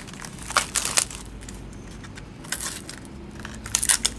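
Plastic wrapper crinkling and rustling in the hands as trading cards are handled, in a few short bursts: about half a second in, about a second in, and twice more near the end.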